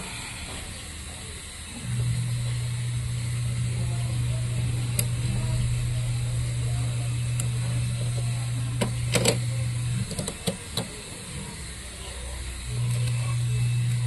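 A steady low hum starts about two seconds in, cuts out about ten seconds in and comes back near the end. A few light clicks around nine to ten seconds come from plastic printer parts and cable connectors being handled.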